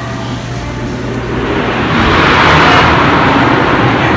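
A rushing noise that swells up over a couple of seconds and dies away again, over a steady low hum.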